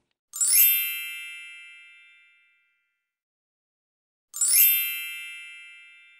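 A shimmering chime sound effect of many high bell-like tones, heard twice about four seconds apart, each ringing out over about two seconds. It accompanies a sparkle title-card transition.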